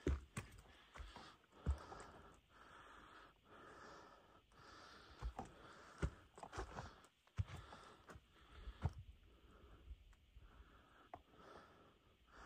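A hiker breathing hard on a steep climb, about one breath a second, with scattered clicks and knocks from footsteps and handling of the camera.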